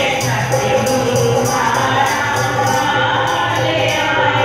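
Devotional Punjabi bhajan sung by a group of women, accompanied by a dholak drum and keyboard, with a steady beat.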